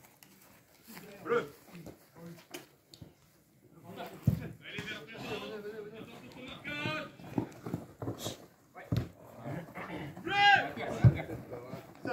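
Footballers shouting to one another across an open pitch, the loudest call about ten and a half seconds in, with a few dull thumps of a football being kicked.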